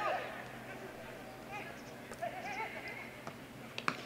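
Faint ambient sound of a football match, with a few distant shouts from players on the pitch. It comes in abruptly at the start.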